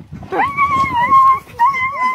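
A dog whining in two long, high, steady cries. The first swells in about half a second in and the second begins near the end.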